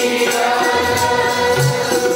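Sikh kirtan: a group of voices singing a hymn over held harmonium chords from Yamuna harmoniums, with tabla playing a steady beat.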